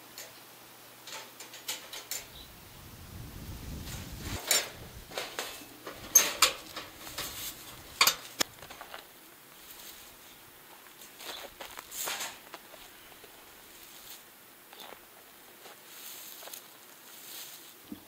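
Wire-mesh live cage trap being handled and set: scattered metallic clinks and rattles of the wire cage, busiest in the middle and with a few more near the end.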